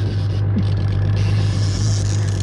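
Boat's outboard motor running at a steady low hum, unchanging throughout.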